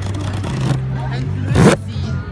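A cardboard box being opened by hand: scraping at the taped flap, then one short loud tearing rip about a second and a half in. A steady low hum runs underneath.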